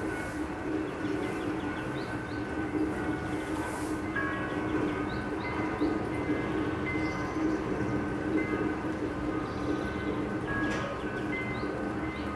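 Fribourg funicular car travelling along its rail track: a steady rumble of wheels and cable running over the track, with thin, high squeals coming and going.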